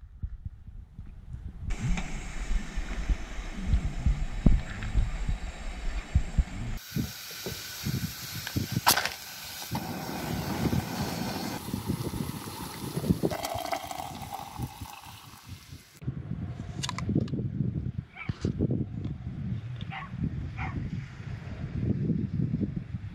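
Camp cooking sounds in several short cuts: a pot of water at a rolling boil with a steady hiss through the middle of the stretch, among scattered knocks and clatter of pans and utensils.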